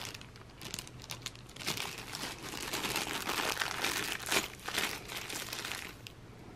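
Thin clear plastic bag crinkling and crackling in the hands in an irregular run, as a small bottle of clipper oil is taken out of it.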